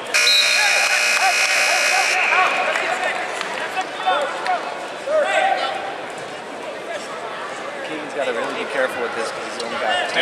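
Scoreboard buzzer sounding loudly for about two seconds and cutting off, marking the end of a wrestling period. After it, crowd voices and shouts fill the gym.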